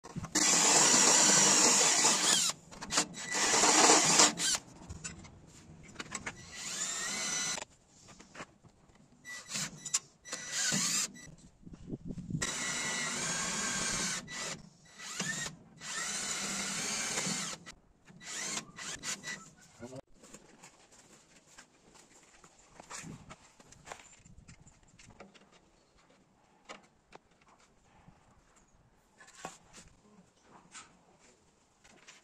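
Cordless Hilti drill running in about six bursts of a few seconds each, with a steady whine in every burst. It first drills into a gate post, then drives screws to fix a metal mounting bracket. From about 20 s on there are only faint clicks and handling sounds.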